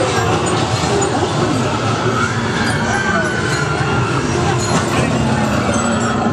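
Loud, dense haunted-maze soundtrack of effects and noise with voices mixed in, steady in level with no pauses.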